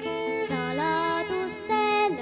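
A young girl singing a song into a microphone over instrumental accompaniment, her voice gliding between held notes.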